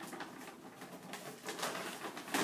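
Brown paper bag rustling and crinkling in irregular bursts as a hand rummages inside it.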